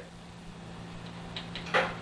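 Steady low electrical hum with faint hiss, with one brief noise near the end.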